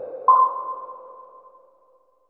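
Electronic outro sound logo: a low tone rings on, then about a third of a second in a higher ping an octave above it sounds, and both fade away toward the end.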